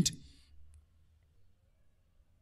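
Near silence with one faint computer mouse click about half a second in.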